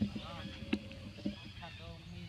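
Two short vocal sounds that rise and fall in pitch, one near the start and one near the end, with two sharp clicks between them.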